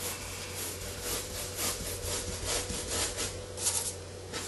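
Bristle brush scrubbing oil paint onto canvas in repeated rasping strokes, about two a second, working the colour over the white ground.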